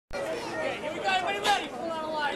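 Several people's voices talking and calling out over one another, a general chatter of a gathered crowd.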